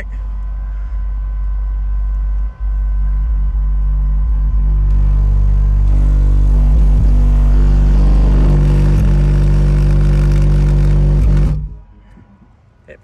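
Four 18-inch subwoofers on a Crescendo 6K amplifier playing a loud, sustained bass burp with the amp driven into clipping. The level climbs a few seconds in, then the bass cuts off suddenly near the end as the amp goes into protect mode from the clipping.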